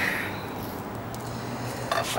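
Quiet background with a faint, steady low hum and no distinct event.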